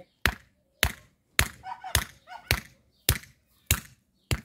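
A hammer striking a short wooden stake and driving it into garden soil: seven sharp, evenly paced blows, a little under two a second.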